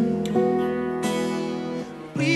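Live ballad music in a gap between sung lines: guitar notes and chords sounding over a held chord, with a short dip in level near the end.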